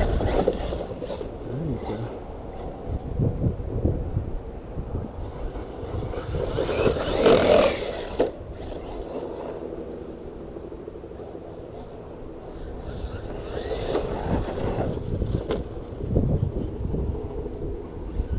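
Arrma Talion V3 RC truck on 6S power running over dirt: its brushless electric motor and tires on loose dirt, with wind on the microphone. Rises and falls as it drives, with a louder burst a little before the middle.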